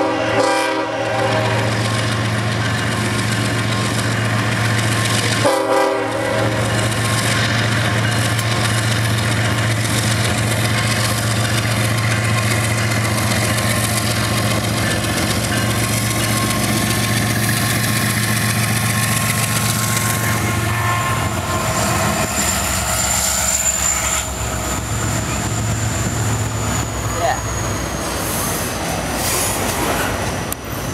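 Norfolk Southern diesel freight locomotives passing close by. The air horn chord ends about a second in and a short second horn blast comes near six seconds, then the engines give a steady low drone. After about twenty seconds the engine sound drops away and the double-stack container cars roll past with a high wheel squeal that slowly falls in pitch.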